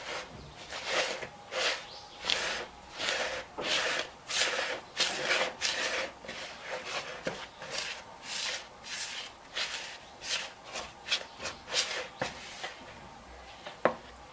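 A hand rubbing and stirring a dry mix of corn semolina, fine semolina and flour in a bowl. It makes a swishing stroke about one and a half times a second, and the strokes stop near the end.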